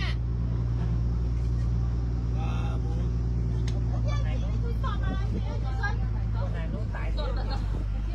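Boat's engine running with a steady low drone, with faint voices chattering in the middle.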